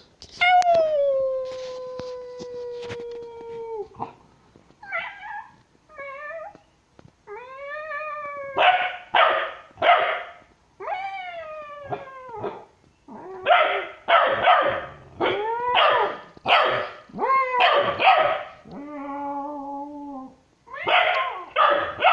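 Bullmastiff puppy howling: a long howl that falls in pitch over the first few seconds, then shorter rising-and-falling howls, breaking into a run of loud barks and yips.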